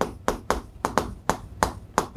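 Chalk tapping and clicking against a chalkboard as numbers are written, a quick uneven run of about ten sharp taps.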